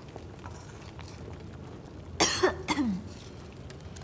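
A woman gives one short, awkward cough about two seconds in, a flustered reaction to being told she looks guilty.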